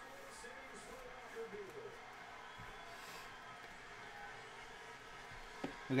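Low-level room sound with soft sliding and flicking of baseball cards being thumbed through a stack by hand. A faint voice sounds in the background during the first two seconds.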